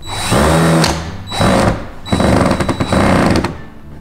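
Cordless drill-driver running in three short bursts as it drives screws through metal flashing into pre-drilled holes in a wooden frame, the motor winding up in pitch at the start of each burst.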